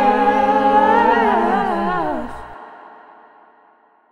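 Layered, harmonised voices humming wordlessly over a low bass drone, ending a song. The voices glide down and stop about two seconds in, leaving an echo that fades away to silence near the end.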